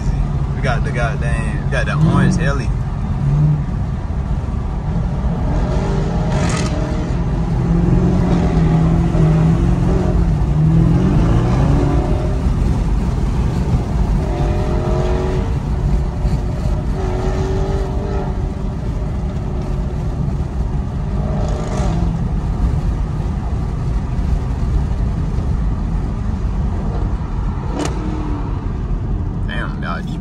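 Camaro ZL1's supercharged 6.2-litre V8 heard from inside the cabin while cruising, a steady low rumble with road noise. The engine note swells about eight seconds in, then settles.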